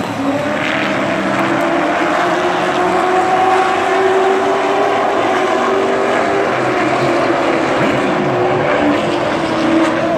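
Several full-bodied Sportsman stock cars racing around a short oval, their engines running hard and steadily, the pitch rising and falling gently as they circle the track.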